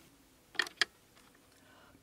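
Two short, sharp clicks close together about half a second in, over quiet room tone.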